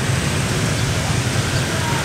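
Steady city street traffic noise: a low hum of motorbike and car engines with tyre noise.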